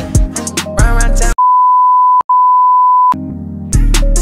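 Hip hop song whose audio is cut out for nearly two seconds, from about a second in, by a steady 1 kHz censor bleep with a brief break in the middle. The music comes back quietly and then at full level near the end.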